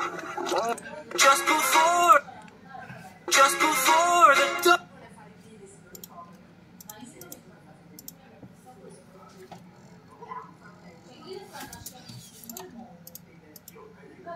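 Film trailer soundtrack from laptop speakers, music with voices, for about the first five seconds. Then it is quiet apart from a few faint clicks.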